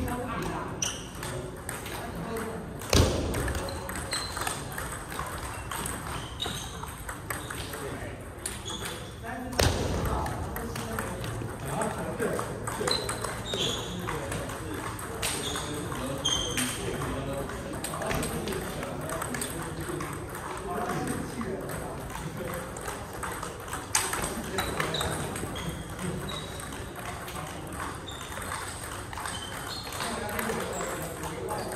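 Table tennis rallies: the ping-pong ball clicking off paddles and table in quick back-and-forth exchanges, over a steady murmur of voices in a large hall. Two loud sharp knocks stand out, about three seconds in and about ten seconds in.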